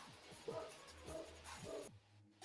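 Faint, muffled sound of a livestream video playing back through the stream: scattered voices over a low hum. It cuts off at the end as the playback is paused.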